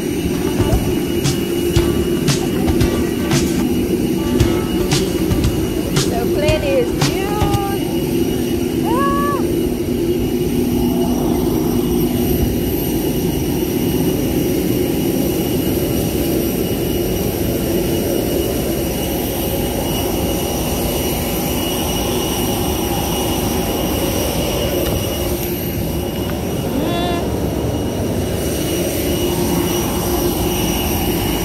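Jet aircraft noise close by: a steady, loud hum and whine with several high steady tones. Footsteps on concrete tap through the first few seconds.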